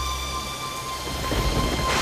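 Dramatic background score: a sustained eerie drone with a low rumbling swell that builds in the second half and peaks near the end, like a thunder sound effect.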